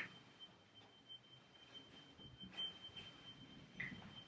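Smoke alarm beeping faintly in the background: a thin, high, single-pitched tone that pulses louder and softer, over near-silent room tone.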